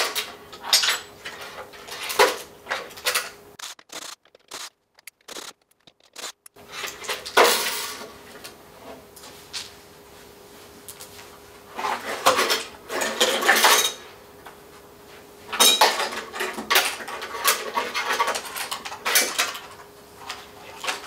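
Metal clattering and knocking as the sheet-metal back panel and chassis of a Peavey XR-1200 powered mixer are handled and taken off, in several separate bursts.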